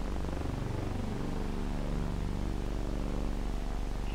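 Steady low hum with faint, slowly shifting sustained tones from an old film's soundtrack, heard between lines of narration.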